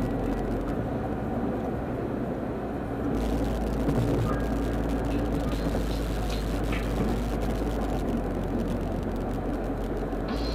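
Steady road and engine noise inside a moving car's cabin: a continuous low rumble that fills in a little about three seconds in, with a few faint ticks.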